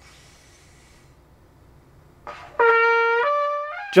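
Trumpet, played with an upstream embouchure, sounding a short rising phrase of three notes about halfway in. The first note is held longest and the last fades away.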